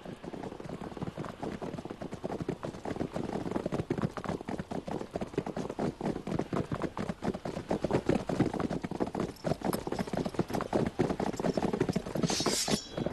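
Hoofbeats of many horses ridden together, a dense, rapid clatter that grows gradually louder as the riders come closer.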